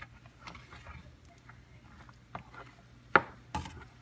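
Wooden spoon stirring thick red chili sauce in a pan, with a few soft knocks against the pan and one sharper click about three seconds in.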